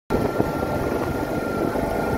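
Steady road and wind noise from a moving vehicle carrying the camera, with engine rumble underneath and a faint steady high whine.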